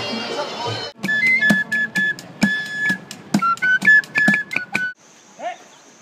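An improvised drum kit of plastic buckets, a metal drum and a cymbal is struck with sticks in quick, uneven hits, under a high, piping melody of held notes that change pitch. About a second of band music with a steady drum beat comes first, and the playing cuts off near the end to faint outdoor quiet.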